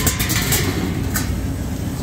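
Refrigeration condensing units running: a steady low hum from the compressors and condenser fans, with a few light ticks in the first second.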